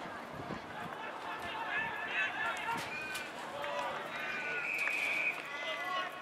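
Players and spectators shouting and calling across a football ground as a tackle is made, with a short high whistle blast near the end.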